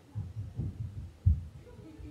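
A run of dull, low thumps, muffled, coming at uneven intervals, the loudest a little past halfway.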